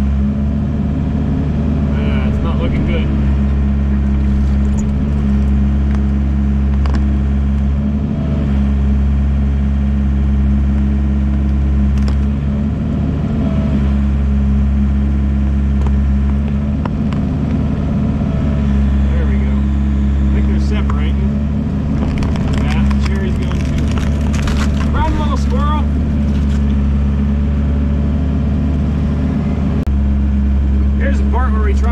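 Excavator's diesel engine running steadily under load, heard from inside the cab, with hydraulics whining on and off as the boom works. A stretch of cracking and snapping wood comes about three-quarters of the way through as trees are pushed over.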